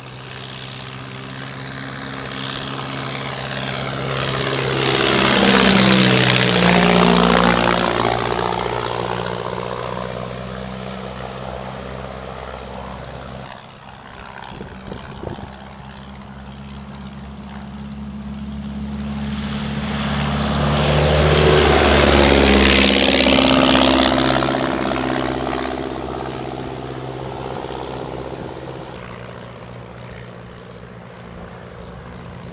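De Havilland Tiger Moth biplanes making two low passes, the buzz of the four-cylinder Gipsy Major engine and propeller swelling to a peak and dropping in pitch as each goes by, about sixteen seconds apart.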